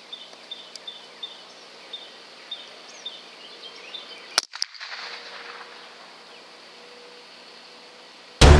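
A single shot from a Ruger 10/22 .22 rimfire rifle about four and a half seconds in: one sharp crack, with a second, fainter tick a fraction of a second later. Before it, a faint background of short high chirps repeating about twice a second.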